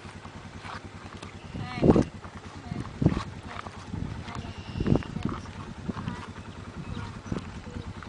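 A small engine idling steadily with an even low pulse, under a few louder bursts of voices about two, three and five seconds in.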